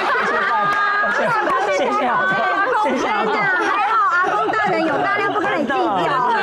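Several voices talking and exclaiming over one another: lively group chatter.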